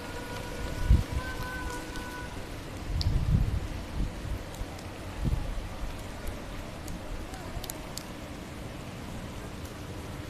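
Steady hiss of running water, like rain, with a few low bumps on the phone microphone about a second in and again between about three and five seconds.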